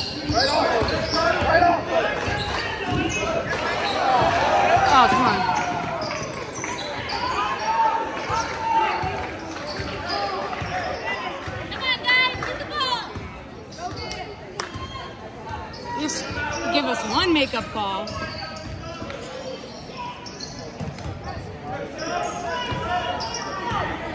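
Basketball game sounds in a large gym: the ball bouncing on the hardwood court amid voices of players and spectators calling out, loudest about four to five seconds in, all echoing in the hall.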